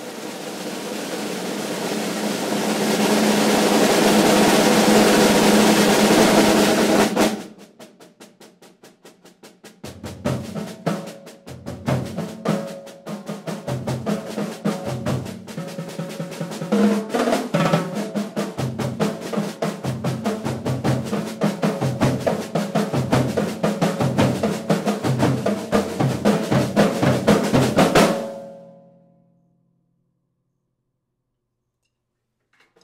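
Percussion ensemble playing snare drum and toms: a snare roll swells louder and cuts off sharply about seven seconds in, followed by soft strokes, then a driving rhythm of sharp snare and tom hits that stops abruptly near the end with a brief ring-out.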